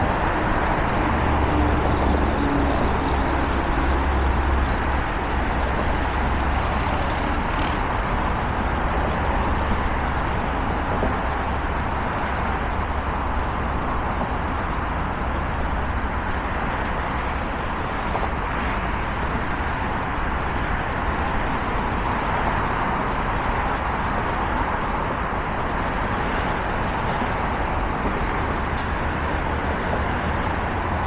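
Steady, dense traffic noise from a busy multi-lane freeway of cars and trucks, heard from an overpass above it.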